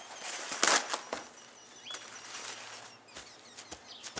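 Paper towels rustling as they are spread over a slab of rinsed, cured pork belly to dry it, with one loud swish under a second in and then a few light pats and crinkles as they are pressed onto the meat.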